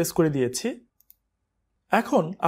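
Speech, then a pause of about a second holding two faint mouse clicks close together, then speech again.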